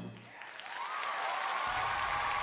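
Theatre audience applauding as a stage number ends, with one long held note that slides up about a second in and then holds steady over the clapping.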